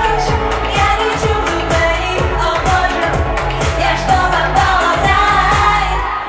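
A woman singing a pop song into a microphone over an amplified backing track with a steady beat. The music stops at the very end.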